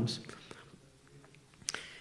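A pause between a man's spoken sentences: his voice trails off at the start, then it is nearly quiet apart from room tone and one short click near the end.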